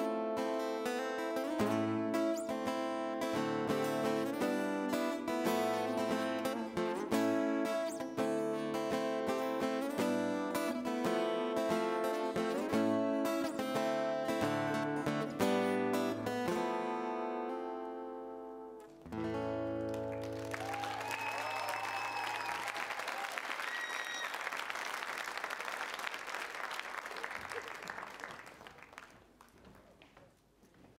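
Solo acoustic guitar picking and strumming a fast medley, ending on a final chord that rings out about 19 seconds in. Audience applause and cheering follow, fading away near the end.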